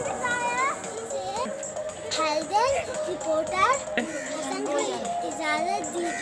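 Children's high voices calling and chattering over background music with a steady held note.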